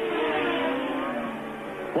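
A 1982 Formula One car's engine passing close by at racing speed, its note falling steadily in pitch as it goes away.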